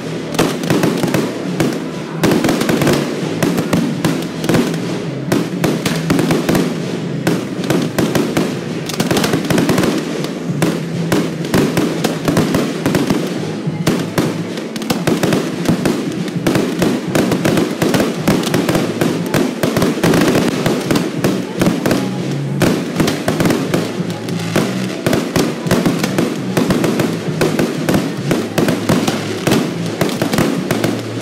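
Aerial fireworks shells bursting in rapid succession: a dense, unbroken run of bangs and crackles.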